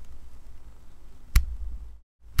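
A single sharp click about a second and a half in, from the Canon EOS R6's main dial being rolled one step to widen the exposure bracketing, over a steady low hum.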